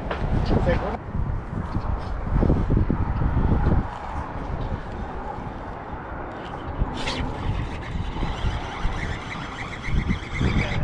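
Wind buffeting the microphone, then a cast with a baitcasting reel: a sharp snap about seven seconds in, followed by the spool's thin whine as line pays out, lasting to the end.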